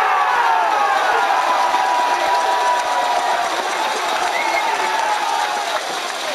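Football crowd cheering a goal: many voices in one long cheer that eases a little toward the end.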